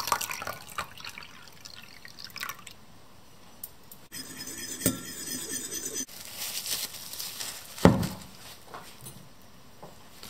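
Water poured from a glass into a ceramic bowl of beaten egg, splashing and dripping over the first couple of seconds. A steady hiss follows about halfway through, and then a single sharp thump, the loudest sound.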